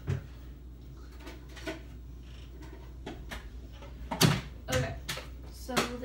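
Kitchen handling noises: a click at the start, then several sharp knocks and clatters about four to six seconds in, as cupboards are opened and shut and things are put away.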